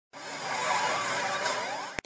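A whooshing swell of noise, like an edited intro sound effect, fading in over the first half second with several faint rising whistle-like tones running through it, then cutting off abruptly at the end.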